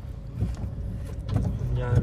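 Low, steady rumble of a car driving, heard from inside the cabin; a man says a word near the end.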